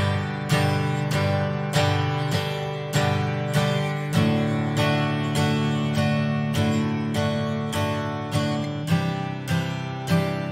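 Steel-string acoustic guitar strummed at a slow, steady tempo, one strum on each beat, a little under two a second, with each chord left ringing. It works through a G–D–C progression, changing chord about four seconds in and again near the end.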